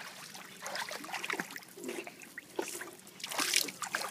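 Light, irregular splashing and sloshing of pool water as a small child swims face-down, kicking and paddling, with a busier flurry of splashes near the end.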